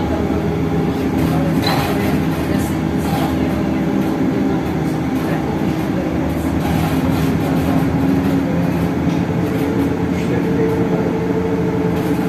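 Interior of a moving city bus: the engine and drivetrain hum steadily in several tones over road rumble, with occasional faint rattles.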